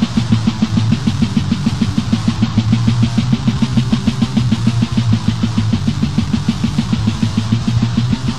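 Death metal band playing at a fast, even beat: distorted electric guitar over a drum kit, on a lo-fi cassette demo recording.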